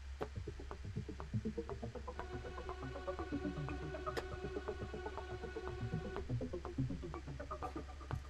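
Software-instrument playback and live recording in a DAW: a string-ensemble tremolo note is held for about four seconds in the middle. Under it run irregular synthesized percussion hits from an FM Builder synth patch and a metronome click at two beats a second (120 BPM).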